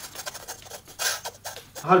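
A clear plastic bag of dog treats crinkling and rustling in the hands, a run of light crackles with a louder rustle about a second in.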